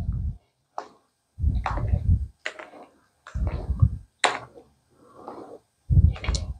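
A bare hand kneading and squeezing thick rice-flour batter in a stainless steel bowl: three deep, wet pushes roughly a second or more apart, with a few light clicks in between.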